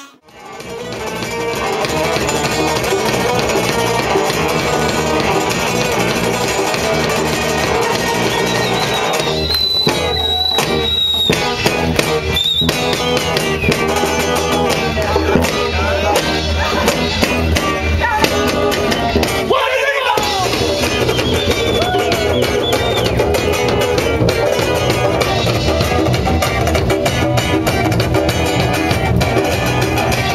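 Live instrumental funk band with Latin percussion playing: electric bass, guitar, drum kit and congas. The music cuts out at the very start and comes back in over a second or two. Near twenty seconds in, the bass briefly drops out.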